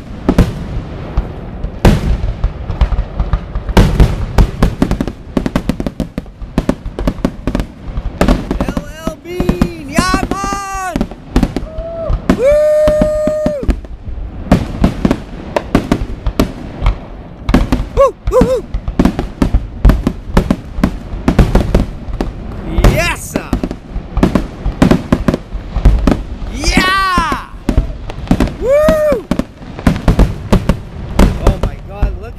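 Aerial fireworks display: shells bursting one after another in a dense, unbroken string of sharp bangs and crackles.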